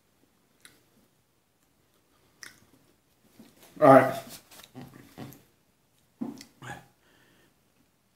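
A man chewing hot pepper seeds with his mouth mostly closed: a couple of faint mouth clicks in near quiet, then a few spoken words and short voiced sounds.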